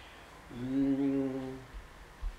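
A man's voice humming one steady, low, unchanging note for just over a second, starting about half a second in.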